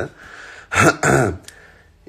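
A man's brief non-speech vocal sound, two quick pushes a little past halfway through, between quieter stretches.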